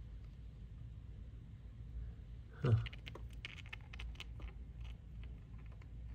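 A quick run of light clicks and taps as the two sawn halves of an agate nodule are handled and brought together, over a steady low hum. A man's short 'huh' comes about two and a half seconds in, just before the clicks.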